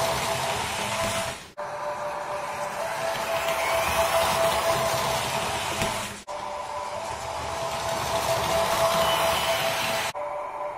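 Sound decoder in a Märklin H0 model ICE playing an ICE running sound through its small loudspeaker: a steady electric whine over a rushing noise. It cuts out abruptly and picks up again twice, about a second and a half in and about six seconds in.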